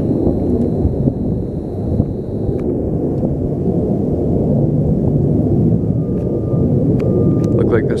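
A steady low rumble, with a thin high whine that stops about two and a half seconds in, and a faint mid-pitched tone that comes and goes near the end.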